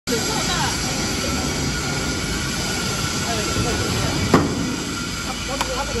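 Injection molding machine running in a factory: a steady hum and hiss, with a sharp clunk a little over four seconds in and a lighter click shortly before the end.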